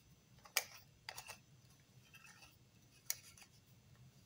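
A few faint, sharp plastic clicks as a small battery flashlight is handled and its parts fitted together: one about half a second in, two more just after a second, and another near three seconds.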